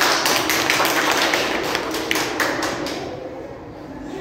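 Hand clapping, a short round of applause that dies away about three seconds in.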